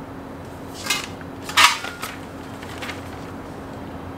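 Loose metal charcoal-grill parts clinking as they are handled: a clink about a second in, a louder ringing clink just after, and a faint one later, over a steady low hum.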